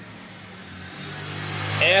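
Low, steady hum of a vehicle engine that grows louder from about a second in, with a man's voice starting at the very end.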